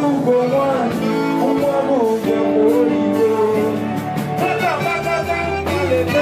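Live band music with a male lead singer's voice over it, sung into a microphone and carried through the venue's sound system.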